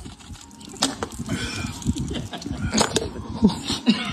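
Two men shotgunning cans of beer: the cans punched open and downed in quick gulps and splashes, with sharp clicks and knocks of the cans about a second in and again near three seconds.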